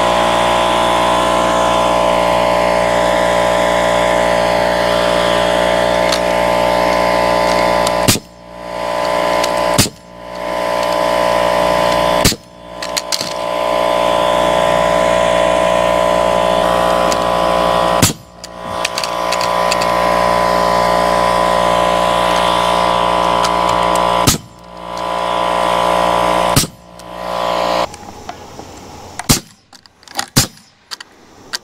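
An air compressor runs steadily while a pneumatic nail gun fires about six sharp shots at irregular intervals. The compressor cuts off near the end, leaving a few light knocks.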